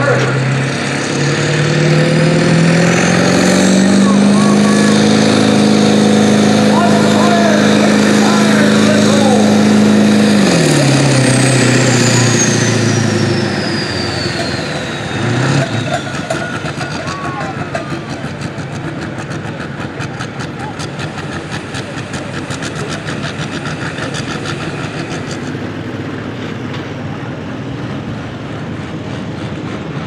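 A 1999 Ford diesel pickup pulling under full throttle. Its engine climbs in pitch, holds high and steady for several seconds, then drops away about 11 seconds in as the driver lets off. A thin high whistle, typical of a turbocharger, rises with the revs and slides down after it.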